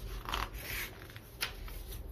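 Paper rustling as the pages of a card deck's guidebook are leafed through: two short brushing rustles in the first second, then a light click about one and a half seconds in.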